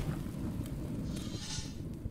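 A low, rough rumbling noise with a faint hiss that swells briefly about a second and a half in; no music or speech.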